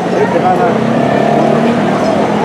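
People's voices talking, over a steady motor drone.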